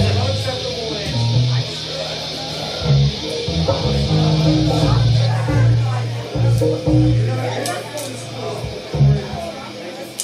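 Electric guitar and bass noodling between songs: loose, scattered low notes that start and stop with no steady beat. A steady amplifier hiss runs underneath and cuts off suddenly about five seconds in, as a guitar amp is turned down.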